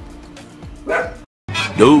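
A dog gives a short bark about a second in, over faint room sound. After a sudden silent gap from an edit, a narrator's voice announces 'two hours later' over music, the comic time-skip card, and this is the loudest part.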